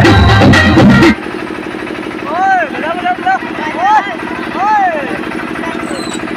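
Loud dance music playing cuts off suddenly about a second in, leaving an engine running with a steady rapid chug. A few raised voices call out over it.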